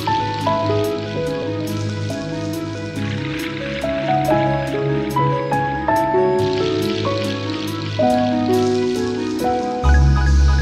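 Instrumental opening of a gentle ballad: a soft melody of held notes over low sustained chords, with a faint high tick about four times a second and a soft hiss behind it.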